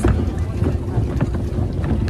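Wind buffeting a phone's microphone, a loud, uneven low rumble.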